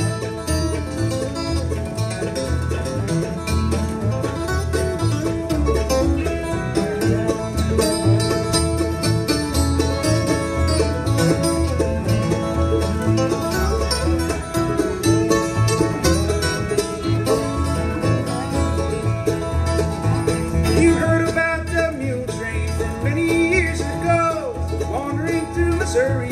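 Acoustic bluegrass band playing an instrumental break: fiddle bowing the lead over mandolin, acoustic guitar strumming and an upright bass plucking a steady beat.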